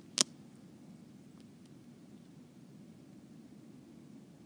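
A single sharp click about a quarter second in, a fingertip tapping a tablet's touchscreen to start a camera exposure, over a faint low steady hum.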